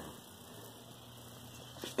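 Quiet room tone with a faint steady low hum and a small click near the end.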